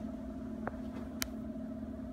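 A steady low electrical hum from a room appliance, with two short clicks as the robe is handled and laid down.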